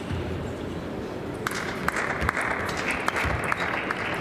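Table tennis ball clicking off bats and the table in a fast rally, starting about a second and a half in, over steady sports-hall noise.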